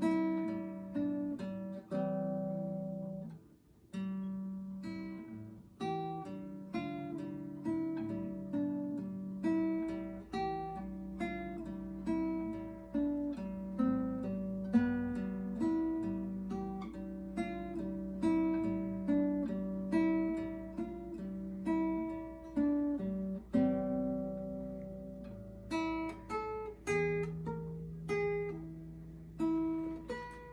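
Solo classical guitar playing a waltz: a plucked melody over ringing bass notes. There is a brief pause about three and a half seconds in.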